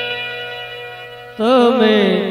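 Gujarati devotional bhajan music: a steady held chord on a sustained instrument, then, about one and a half seconds in, a male voice comes in loudly with a wavering, ornamented melody.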